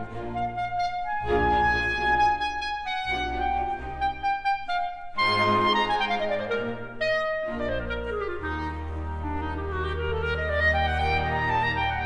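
Solo clarinet with orchestra, playing quick ornamented runs over soft string accompaniment. Descending runs come in the middle, and a held low note sounds beneath the clarinet near the end.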